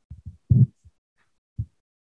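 A few short, muffled low sounds through a video-call connection, like clipped fragments of a man's voice as he gets ready to speak: some tiny ones at the start, a stronger one about half a second in, and one brief one a second later.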